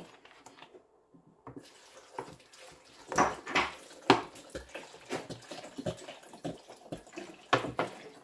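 Water poured from a plastic 2-litre soda bottle into a plastic blender jar of chopped mango, starting about a second and a half in and going on in irregular glugs.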